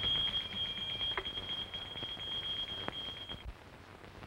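A steady, high-pitched eerie tone, a spooky sound effect marking a spirit manifestation at a seance. It holds on one pitch and cuts off about three and a half seconds in.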